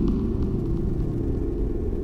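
Low, steady electronic drone with a rumbling bottom, laid under a section change, that cuts off abruptly at the end.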